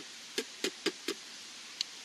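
Chewing fresh, crisp wild greens: a few short sharp clicks and crunches, four close together in the first second and one more near the end.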